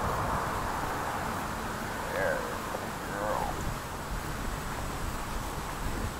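Wind rumbling on the microphone over a steady outdoor hiss, with a couple of short spoken sounds about two and three seconds in.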